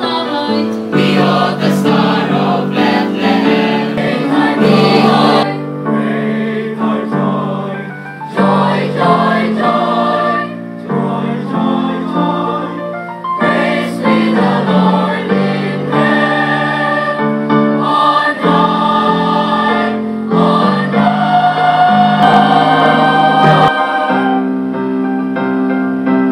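Mixed youth choir of girls and boys singing a Christmas cantata number together, several voice parts held in sustained chords that change every second or so.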